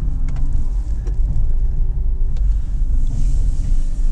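Porsche Cayman 987's mid-mounted flat-six running at low revs, heard inside the cabin as a steady low rumble, with revs held down by the traction control as the car struggles for grip on light snow.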